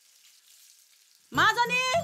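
Faint sizzle of food frying in a wok on a gas stove for about the first second. Then a loud voice cuts in, with bending pitch over steady low notes of background music.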